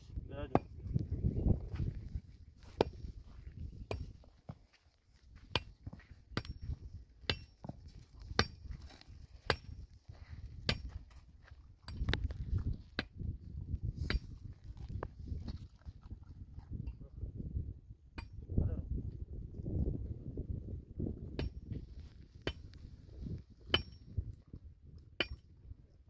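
A dog eating from a lump of food on a rock, chewing and crunching, with sharp clicks of its teeth every second or so over bursts of lower gnawing noise.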